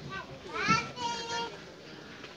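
A high-pitched human voice, rising and then held in a drawn-out call, from about half a second to a second and a half in.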